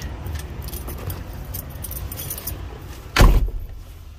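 Rustling and small clinks while climbing into a semi-truck cab, then the cab door shuts with one loud bang about three seconds in.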